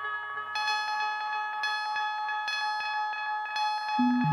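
Eurorack modular synthesizer playing bell-like tones in a slow generative sequence, a new note about once a second, each ringing on under heavy delay.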